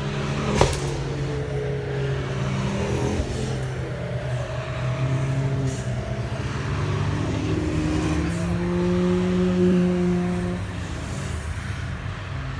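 Car engines lapping a race circuit: several cars pass in turn, their engine notes holding steady and then stepping to new pitches. A sharp click about half a second in.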